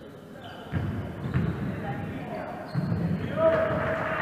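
A basketball bouncing a few times on a hardwood gym floor, with players' voices echoing in the gym.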